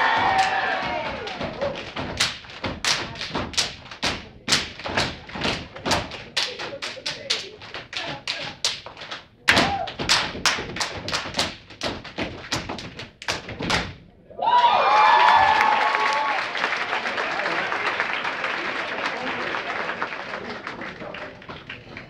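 Step team stepping: rhythmic foot stomps and hand claps on a hard floor, several sharp strikes a second, with a brief break about nine seconds in. About fourteen seconds in the strikes stop and the audience breaks into applause and cheering.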